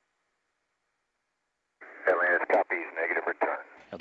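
Near silence, then about two seconds in a brief voice transmission over the air-to-ground radio loop, thin and band-limited.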